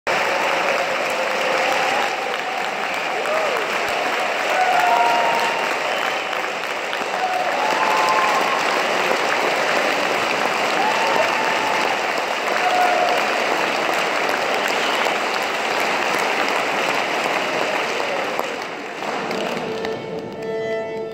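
Audience applause, steady and dense, with a few voices faintly audible over it. The clapping dies away near the end.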